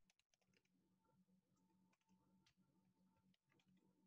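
Very faint typing on a computer keyboard: a few scattered key clicks over a low steady hum, near silence overall.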